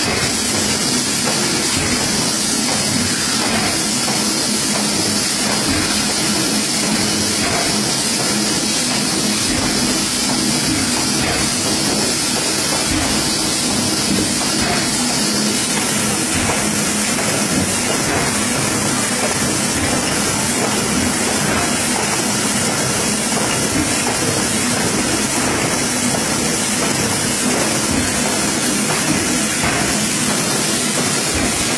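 Automatic high-speed folder-gluer for cartons running steadily: a continuous mechanical whir with a strong high hiss that eases slightly about halfway through.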